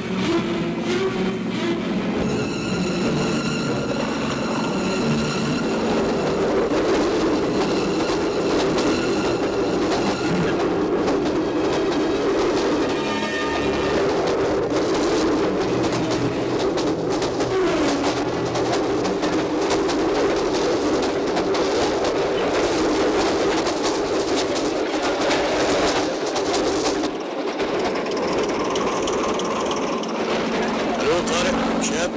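A train running on the rails, with a horn held for a few seconds near the start.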